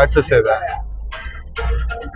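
Soundtrack of an on-screen advert played through a cinema's sound system: a short burst of voice at the start, then scattered voice snippets over deep, bass-heavy music, all in the large auditorium.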